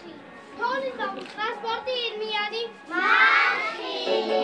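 Young children's voices speaking, then about three seconds in a whole group of children shouting out together, louder and higher.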